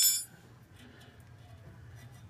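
A metallic clink ringing out and dying away right at the start, as a steel drum-brake return spring is snapped into place with a brake spring tool; then near quiet with a faint low hum.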